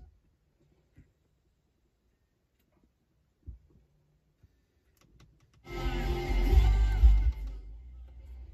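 Car stereo playing music from a CD: after several seconds of near silence with a few faint clicks, music with a heavy bass comes on loud for about a second and a half, then drops to a lower volume as it is turned down.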